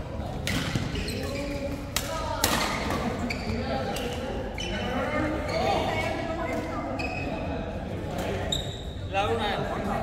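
Badminton rackets striking a shuttlecock during rallies: several sharp hits, with players' voices, echoing in a large sports hall.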